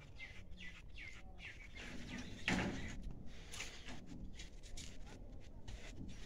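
Small birds chirping repeatedly in short, quick downward notes, with a brief louder noise about two and a half seconds in.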